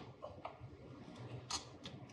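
Faint handling noise of a plastic battery backup unit being positioned against a cabinet wall: a few light clicks and taps spread over two seconds.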